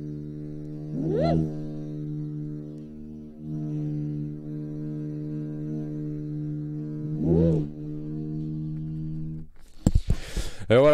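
A didgeridoo made from a plain tube, played as a steady low drone with two rising whoops over it, about a second in and again near the end. The drone sags briefly about three seconds in and stops just before the end: the player has not yet mastered circular breathing, so he cannot hold the drone continuously.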